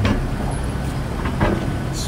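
City street traffic: a steady low rumble of motor vehicles, with two short knocks, one at the start and one about a second and a half in.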